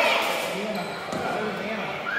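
A basketball bouncing on a hardwood gym floor, one bounce about a second in, under the chatter and calls of players and spectators in the echoing gym.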